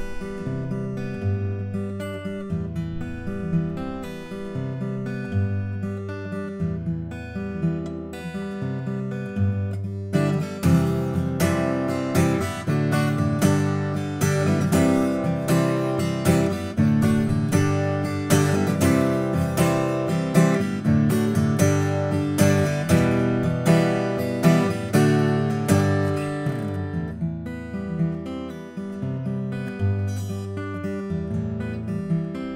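Solo fingerstyle playing on a small-body, 12-fret acoustic guitar with a cedar top and cocobolo back and sides. The playing grows fuller and louder about ten seconds in, then eases back near the end.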